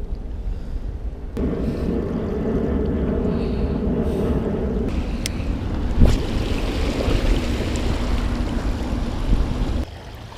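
Wind rumbling on the camera microphone, with a steady low hum from about one to five seconds in. There is a sharp knock of the camera being handled about six seconds in.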